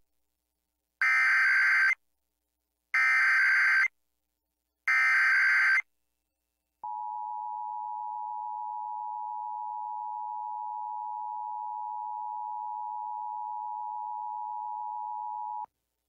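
Emergency Alert System Required Monthly Test from an AM radio station. The SAME digital header is sent three times as short bursts of data tones, each about a second long. After a pause comes the steady two-tone EAS attention signal, held for about nine seconds before it cuts off.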